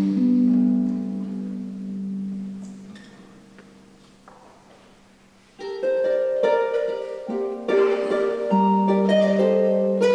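Concert harp playing solo: a low chord rings on and fades away over about five seconds, then a new, louder passage of plucked notes begins.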